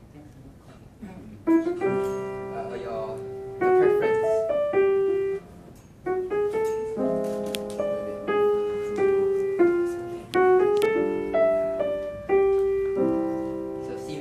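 Grand piano playing an improvised melody of single notes and chords, starting about a second and a half in, with a short pause near the middle before it resumes with fuller chords.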